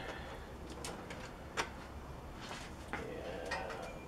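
Stainless steel kitchen tongs clicking and knocking lightly while lifting a rack of cooked pork ribs out of a tin-foil pan, over a steady low rumble. A few short, sharp clicks, the clearest about a second and a half in.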